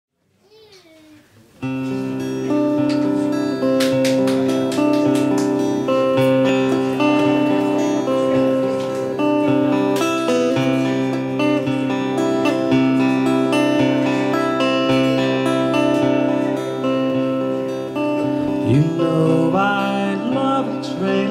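Acoustic guitar playing the instrumental intro of a country-folk song, starting abruptly about two seconds in after a near-silent opening. A singing voice comes in near the end.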